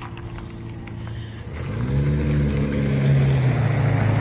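A motor vehicle's engine on the street, a low hum that grows louder from about halfway through as it comes closer.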